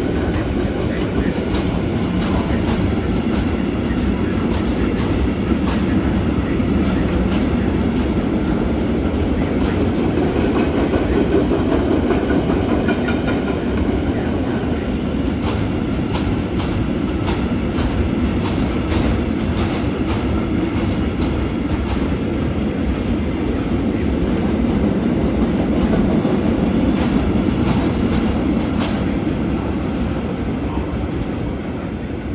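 Freight train of double-deck car-carrier wagons rolling past with a steady rumble. The clickety-clack of wheels over rail joints comes in quick runs through the middle and again near the end.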